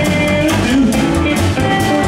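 Live rockabilly band playing: electric lead guitar and acoustic rhythm guitar over upright bass and a drum kit, a steady driving beat.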